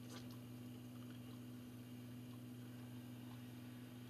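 Quiet room tone with a faint, steady low hum.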